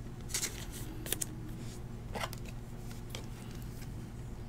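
Trading card being slid into a clear plastic penny sleeve and rigid toploader, giving a few soft plastic rustles and clicks over a steady low hum.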